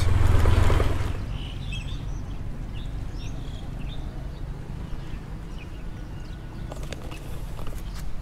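Low rumble of wind and road noise from a moving motorbike for about the first second, then a quieter steady outdoor ambience with a few faint bird chirps.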